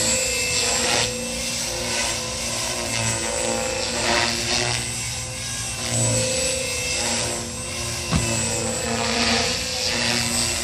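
JR Forza 450 electric radio-controlled helicopter in flight: a steady high motor and rotor whine, with the blade swish swelling and fading every second or two as it manoeuvres. One sharp click sounds about eight seconds in.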